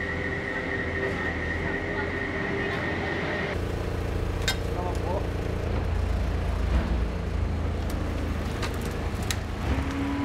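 Diesel engine of a Komatsu skid-steer loader running steadily, heavier from about three and a half seconds in, with a few sharp knocks over it. Before that, a steady high tone sits over a low hum.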